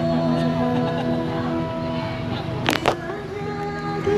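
A woman singing long held notes to an acoustic guitar, over the chatter of a seated crowd. About three quarters of the way through come two sharp knocks in quick succession.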